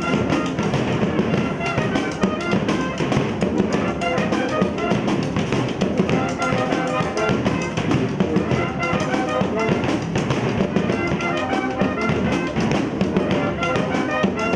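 Street brass band playing live: trumpets, trombones and tuba play a melody over a steady, busy beat on large metal bass drums and a snare drum.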